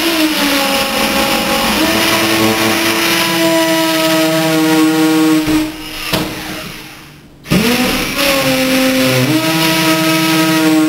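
Cordless drill with a 2 mm (1/8-inch) bit drilling into the mortar joint around a glass block: the motor speeds up and runs steadily, stops about five and a half seconds in, and starts up again about two seconds later, rising in pitch as it gets back up to speed.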